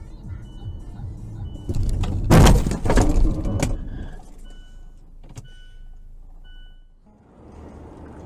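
A car crash: a loud crunching collision about two seconds in, a cluster of impacts lasting around two seconds, over engine and road rumble. A short high electronic beep repeats about once a second.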